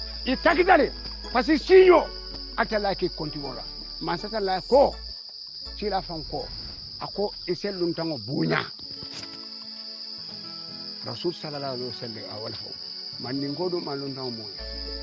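Speech in a local language, with a pause of about two seconds before it picks up again near the end. A steady high-pitched hiss runs under it throughout.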